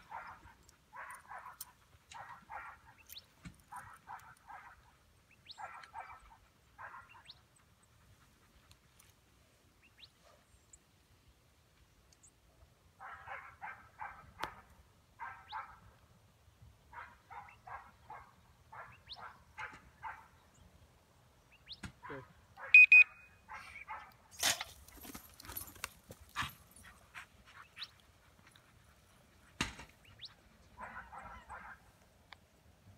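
An English Pointer sniffing hard while working scent: short bouts of quick sniffs, about a second apart, with a pause in the middle. Louder rustling and brushing through the grass comes near the end.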